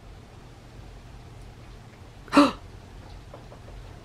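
Quiet room tone over a low steady hum, broken once about two and a half seconds in by a short, sharp vocal sound.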